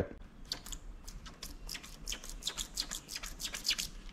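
Losi 22S drag car's plastic oil-filled shocks being pumped up and down by hand, giving a quick run of faint squishy ticks. It is the sound of air in shocks that came low on oil and need topping up and bleeding, as the owner judges.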